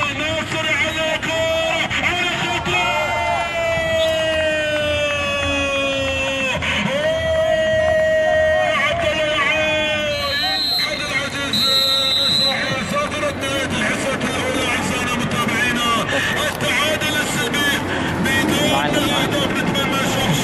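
Vocal music: a voice singing long held notes that glide slowly downward, over a continuous background.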